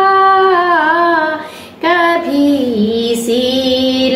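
A woman singing a Garhwali khuded geet, a folk song of longing for her parents' home, solo and unaccompanied. She holds long notes that bend and waver. She pauses for breath about a second and a half in, then carries on with a lower held note.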